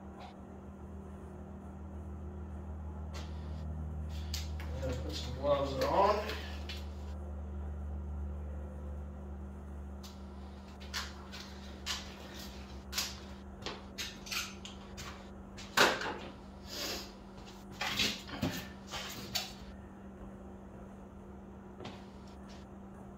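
Scattered knocks and clatter of tools or parts being handled off to one side, bunched in the second half, over a steady low hum that fades out about seven seconds in. A brief wavering pitched sound comes about five seconds in.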